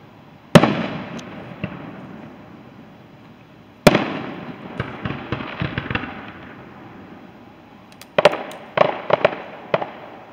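Aerial firework shells bursting. A single loud boom comes about half a second in and fades off in a long echo. Another boom comes about four seconds in, followed by a scatter of crackling pops, then a quick run of six or seven bangs near the end.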